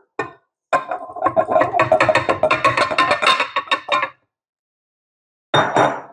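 Glass mixing bowl clinking rapidly against a stand mixer's metal bowl as flour is tipped and shaken out of it, with a ringing tone from the glass. The clatter lasts about three seconds, stops suddenly, and a short clink follows near the end.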